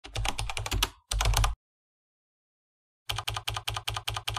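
Computer keyboard typing: quick runs of key clicks, about ten a second. The typing stops dead for about a second and a half in the middle, then starts again near the end.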